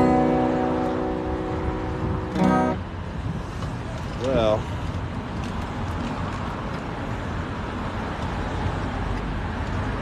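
Acoustic guitar's last chord ringing and fading, with one short final strum about two and a half seconds in. After that, steady city street traffic noise, with a brief vocal sound a little after four seconds.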